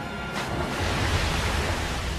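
Film sound of a body plunging into water: a heavy splash about a third of a second in, the rush of spray dying away over the following second and a half, over a low music score.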